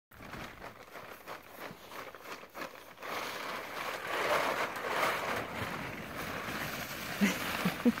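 Blue plastic tarp rustling and crinkling as a horse lifts it in its mouth and a small terrier tugs at it, loudest about halfway through. A person laughs near the end.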